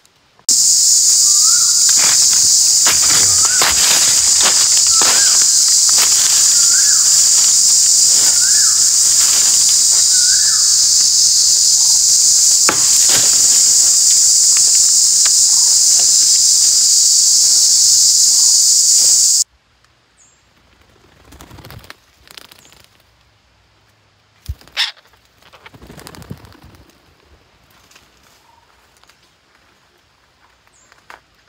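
Loud, steady, high-pitched insect drone in dry forest, with a bird repeating a short rising-and-falling call about every two seconds in the first half. The drone cuts off abruptly about two-thirds of the way through, leaving faint rustling in leaf litter and a few sharp clicks.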